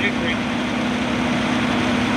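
Fire engine idling: a steady engine drone with a constant low hum.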